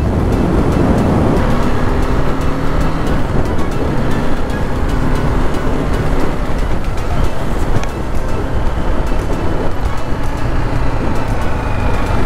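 Motorcycle riding at highway speed: steady wind and road rush over the microphone with the single-cylinder engine's note underneath, from a BMW G310R. Music plays over it.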